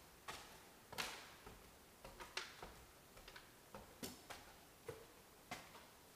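Footsteps climbing bare wooden stair treads: a series of short, sharp knocks at an uneven pace, the loudest about a second in.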